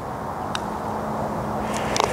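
Steady low outdoor rumble with a faint constant hum, and one sharp click about half a second in.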